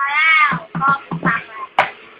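A person's high-pitched, cat-like meowing squeal: one loud arching call at the start, then several shorter ones, with music with a beat playing underneath.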